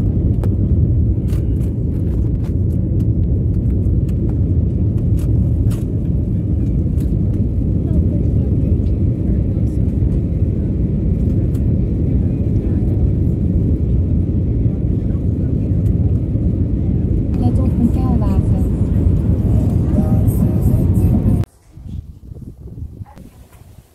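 Car driving along a street, heard from inside the cabin: a steady low road rumble of tyres and engine, cutting off suddenly shortly before the end.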